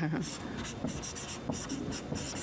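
Marker writing on a whiteboard: a quick series of short, scratchy pen strokes as letters are written.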